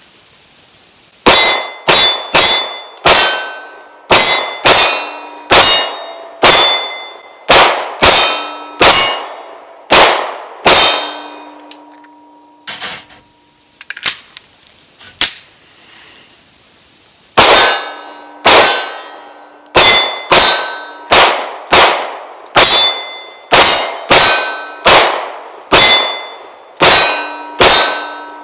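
Pistol shots fired in quick succession at close range, each followed by the ringing clang of a steel plate target being hit. There are two strings of more than a dozen shots each, with a pause of several seconds between them.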